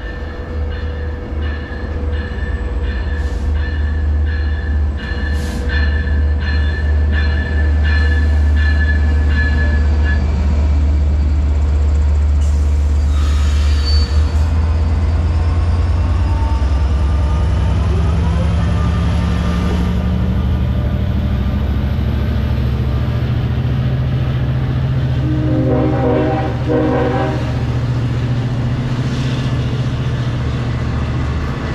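Long Island Rail Road DE30AC diesel locomotive hauling bi-level coaches approaches and passes close by, with a deep engine drone throughout. An evenly repeating ringing, about twice a second, runs through the first ten seconds. Two short horn blasts sound near the end as the coaches roll past.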